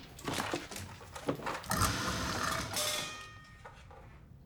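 A man clambering in through a kitchen window over the sink: a run of knocks, scrapes and bumps against the counter and fittings, then a louder clatter about two seconds in that ends in a brief ring and fades by about three seconds in.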